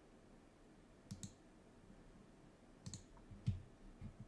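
Faint computer mouse clicks: a pair about a second in, another pair just before three seconds, and a single duller click just after.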